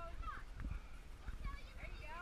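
Indistinct voices of people calling and shouting at a distance, short rising-and-falling calls with no clear words, over a low uneven rumble and knocks on the body-worn camera's microphone.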